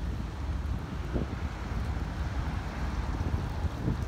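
Wind rumbling on a phone microphone on a city sidewalk, with street traffic going by underneath: a steady low rumble with no distinct events.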